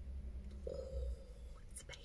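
Quiet car-interior background with a steady low rumble, a brief murmured hum from a person a little under a second in, and a few faint clicks near the end.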